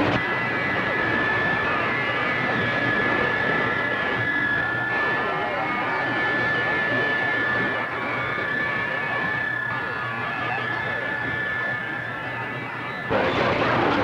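CB radio receiver on channel 28 putting out loud band noise from a skip signal, with a steady high whistle (a heterodyne) and faint unreadable voices under it. It cuts off about a second before the end.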